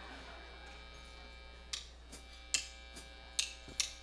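Steady amplifier hum, then from under two seconds in a row of sharp ticks about two a second: a drummer's count-in leading the band into the song.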